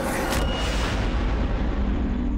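Cinematic boom hit in a TV drama's background score: two sharp cracks about a third of a second apart near the start over a deep rumble, the bright top fading within a second into low, tense music.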